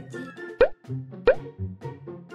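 Background music with two cartoon-style plop sound effects, each a short upward-bending pop, about two-thirds of a second apart; the plops are the loudest sounds.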